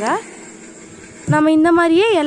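A person speaking, with a pause of about a second of faint background noise before the voice starts again.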